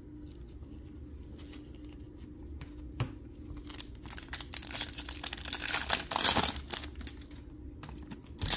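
Foil wrapper of a 2023 Panini Prizm football blaster pack being torn open and crinkled by hand, crackling in quick bursts for a few seconds, loudest a little past the middle. There is a single sharp click about three seconds in, and a faint steady hum underneath.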